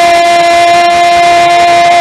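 A commentator's long, loud, held shout of "gol" on one steady high note, celebrating a goal.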